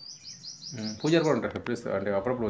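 A small bird chirping a quick run of high, short notes, about six a second, each a little lower than the last, fading out after about a second and a half.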